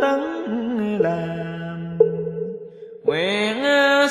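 Buddhist chanting sung as music: a single voice holds long, steady notes that step from one pitch to another. About two and a half seconds in the phrase fades out, and a new held phrase starts about a second later.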